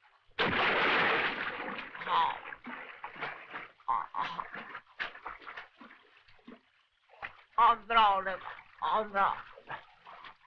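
A loud splash of water about half a second in, then irregular splashing and sloshing, with wordless voice sounds near the end.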